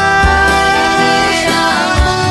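Devotional kirtan music: a lead voice singing through a microphone over steady held instrument tones, with recurring drum or cymbal strokes.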